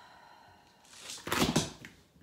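Hand brushing the shirt at a clip-on lapel microphone: a loud rustling scrape about a second long, starting about halfway through.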